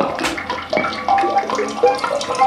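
Free-improvised electroacoustic music from a saxophone-and-live-electronics ensemble: a busy scatter of short pitched blips that jump between many pitches, mixed with sharp clicks.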